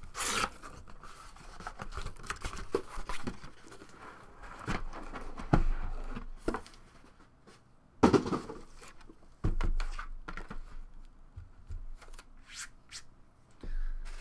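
A cardboard shipping case being torn and pulled open by hand, with irregular tearing, scraping and rustling. About eight seconds in a clear plastic wrapping is handled, with louder rustles around then.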